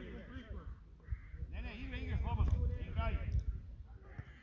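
Indistinct voices calling out across an open football pitch, over a steady low rumble.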